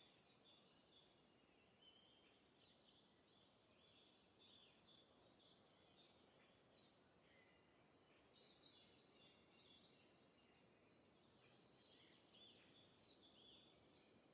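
Near silence with faint birdsong: scattered short chirps and downward-sliding whistles throughout.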